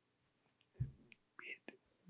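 Near silence with a man's soft mouth sounds: a faint lip smack a little before halfway, then a quick breath and a few small mouth clicks near the end.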